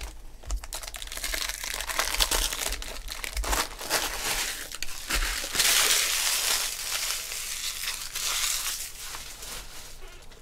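Foil trading-card pack wrappers crinkling and rustling in the hands, with small clicks of cards being handled; the crinkling grows denser for about a second around the middle.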